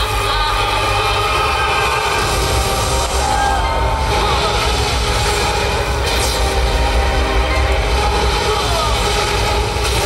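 A water-music show's soundtrack playing loud over outdoor speakers: dramatic music over a deep, continuous rumble, with gliding sound-effect tones running through the middle and later part.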